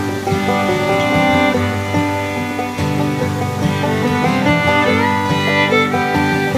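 Instrumental background music played on string instruments, plucked and bowed, with a steady run of notes.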